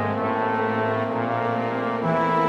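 Orchestral music: a held chord over a sustained low bass note, changing to a new chord right at the end.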